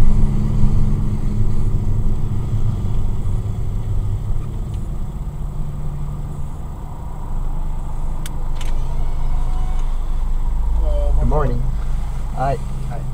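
Car engine and tyre noise heard inside the cabin as the car slows on a wet road and rolls up to a stop. Two short clicks come about eight seconds in, and a deeper low rumble sets in near the end.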